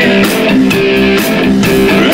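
Live rock band playing a rock-and-roll song, with electric guitar to the fore over bass and drums.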